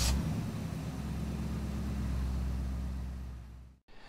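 Car engine catching and then running at a steady idle, fading out near the end and cutting off suddenly.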